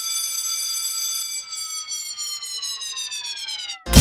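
Cartoon falling-bomb whistle sound effect: one long whistle slowly dropping in pitch while clock-like ticks speed up under it. Just before the end it breaks into a loud explosion boom as intro music starts.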